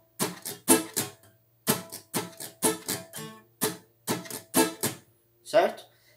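Acoustic guitar strummed in a slow reggae pattern with the fretting hand resting on the strings without pressing them, so the chords do not ring out and the strokes come out as short, muted percussive chucks. The strokes come in quick groups of two to four with short gaps between.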